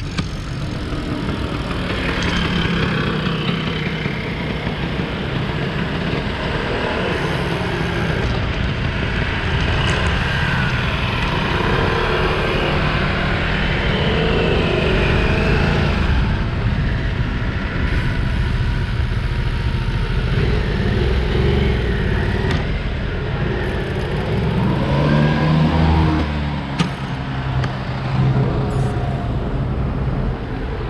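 Motor traffic passing on the road, heard over a steady low rumble from the ride. About 25 seconds in, one vehicle's engine rises and falls in pitch as it goes by.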